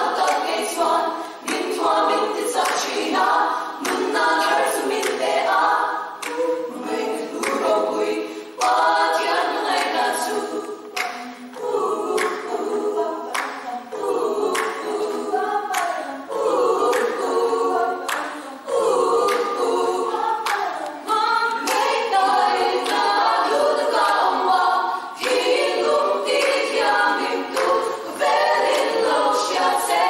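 Women's choir singing a cappella.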